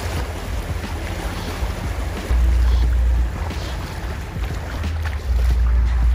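Shallow river water rushing over stones as people wade across it, with wind buffeting the microphone in heavy low gusts about two seconds in and again near the end.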